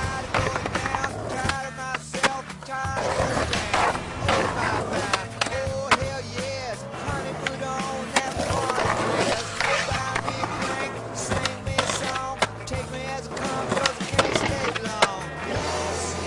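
A song with vocals and a steady bass line, mixed with skateboard sounds: wheels rolling and sharp clacks of boards popping and landing now and then.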